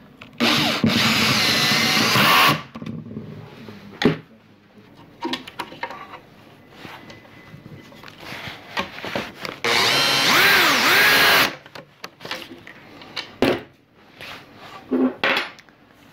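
Cordless drill-driver driving screws into a propeller hub in two runs of about two seconds each, the motor's pitch rising and falling as it speeds up and slows. Short knocks and clicks in between.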